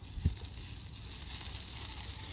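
Steady outdoor noise with a low rumble, typical of wind on the microphone, and a faint crackling hiss. There is one dull thump about a quarter second in.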